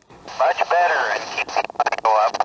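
Another operator's voice coming in over the Yaesu handheld radio's small speaker: thin, hissy FM audio relayed through a distant repeater. It starts a moment in, with a short break near the end. It sounds bad, a weak, marginal signal.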